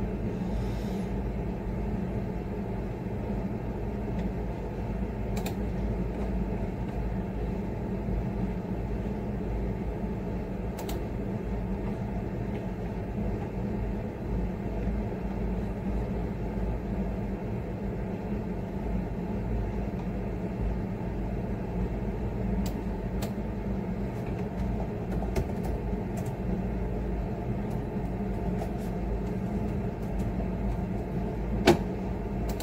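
A steady low background hum with a few short keyboard clicks, which come more often near the end as typing starts.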